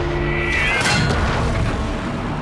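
Tank-battle sound mix: booming impacts of a tank shell hitting a Sherman tank, with a brief falling metallic whine about half a second in, over film music.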